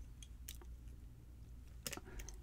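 A few faint, scattered clicks of a steel pick working the pins of a brass mortise lock cylinder under tension from a tension wrench.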